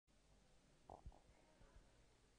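Near silence: room tone, with a few faint low thumps about a second in.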